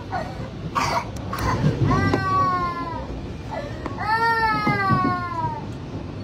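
A high-pitched voice wailing in two long, slowly falling cries, about two and four seconds in, over a steady low rumble.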